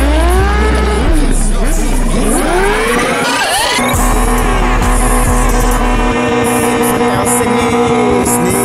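Suzuki sport bike engine revving hard during a rear-tyre burnout, its pitch sweeping up and down, with a long climb just before it drops away about four seconds in. Music with a steady bass plays underneath and carries on alone after the engine fades.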